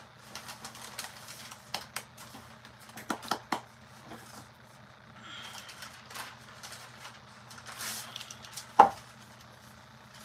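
Scattered light clicks and taps of paintbrushes and paint supplies handled on a workbench, with one sharper, louder knock near the end, over a steady low hum.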